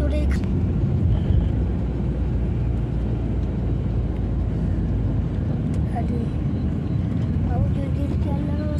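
Steady low road rumble of a car driving, heard from inside the cabin.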